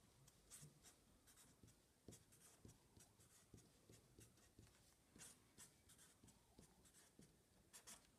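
Faint scratching of a felt-tip marker on paper, in many short, irregular strokes as letters and lines are drawn.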